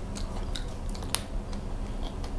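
Close-miked chewing of a mooncake, with small irregular wet mouth clicks; one sharper click just past a second in.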